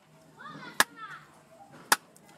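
Sharp hand snaps keeping a steady beat of about one a second, two of them here, about a second apart. Between them a faint voice slides up and down in pitch.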